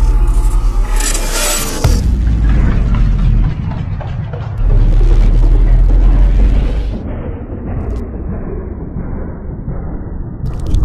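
Intro music with deep booming, explosion-like sound effects: a low rumble with a fresh boom about two seconds in and a louder one near five seconds, dying away in the last few seconds.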